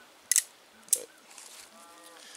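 Two sharp metallic clicks about two-thirds of a second apart from a Cimarron Lightning single-action revolver being worked in the hands.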